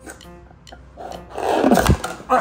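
A person blowing hard into a rubber balloon: a loud burst of breath starting about a second in and lasting under a second, over background music with steady notes.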